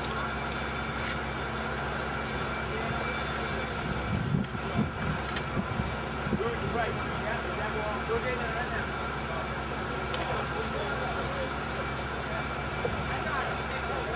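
A heavy construction machine's engine running steadily at a concrete pour, with people's voices over it for a few seconds in the middle.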